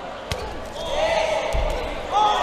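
Impacts in a boxing ring: a sharp smack about a third of a second in and a dull thump past the middle, heard over the arena's room sound.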